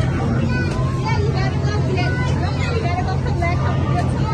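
Space Invaders Frenzy arcade cabinet playing: a loud, steady low electronic drone with short high chirping game effects over it, amid children's voices and game-room chatter.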